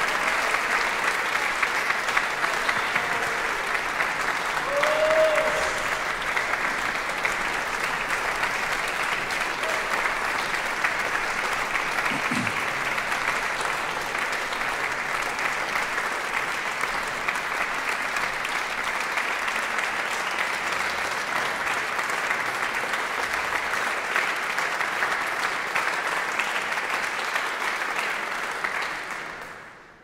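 Audience applauding steadily, the clapping dying away just before the end.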